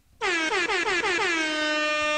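An air-horn sound effect: one long blast starting a moment in, its pitch sagging slightly at first and then holding steady.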